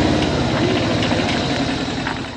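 A motor vehicle engine idling steadily at close range.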